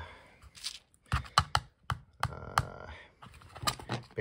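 An irregular series of sharp clicks and light taps, about seven, of small hard items being handled and knocked together.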